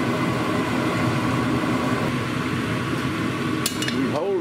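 Pork belly cubes frying in oil in a cast iron pot, a steady sizzle over a constant background hum, with a few sharp clicks near the end as the metal slotted spoon knocks the pot while stirring.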